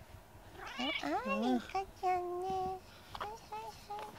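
A cat meowing: one long, wavering meow that bends up and down in pitch, starting about half a second in and lasting about a second.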